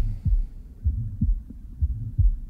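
Recorded heart sounds of aortic stenosis as heard through a stethoscope: paired lub-dub beats about once a second, with a murmur filling the gap between the first and second sound of each beat, the ejection systolic murmur of a narrowed aortic valve.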